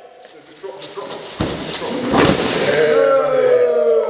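A heavy strongman carry stone dropped onto a concrete floor about one and a half seconds in, a deep thud followed by a second knock, then a man's long shout with a slowly falling pitch.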